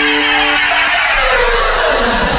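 A whooshing noise sweep that falls steadily in pitch, a produced trailer transition effect. A held two-note chord underneath drops out within the first second.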